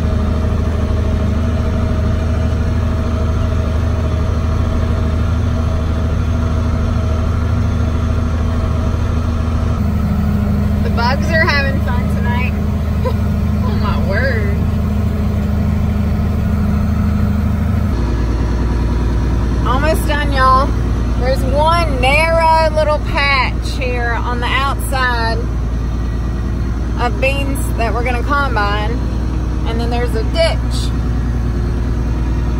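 Tractor engine running steadily under load, heard from inside the cab while it pulls a wheel hay rake. Its drone shifts abruptly twice, about ten seconds in and again near the middle.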